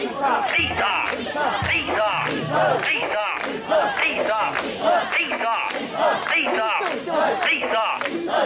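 Crowd of mikoshi bearers chanting a rhythmic call in unison, repeated over and over without a break as they carry the portable shrine.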